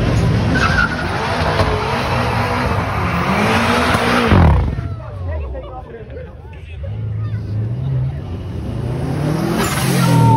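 A car's engine revving hard with its tyres spinning and squealing for about four and a half seconds. The revs then drop off suddenly, and another engine's note builds again near the end, with crowd voices throughout.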